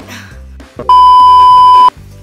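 A loud, steady electronic bleep about a second long, added in editing, starting about a second in and cutting off sharply, over background music.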